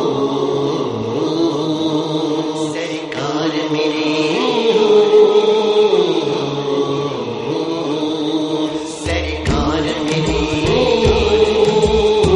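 Music: a sustained vocal chant in long, slowly gliding tones, as in a naat's opening. A low, regular beat joins about nine seconds in.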